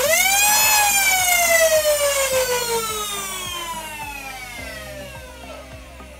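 Nerf Stryfe blaster's Eclipse Gen 2 flywheels on Fang Revamp motors revving up and spinning down: a whine that rises quickly within the first second, then falls slowly in pitch and fades over the next several seconds. It sounds like a police siren.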